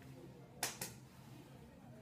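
Two quick light clicks of eggshell being handled, a little over half a second in and close together, over quiet room tone.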